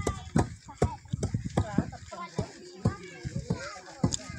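Sharp knocks at a steady pace of about two and a half a second, growing less regular after the first couple of seconds, with people talking.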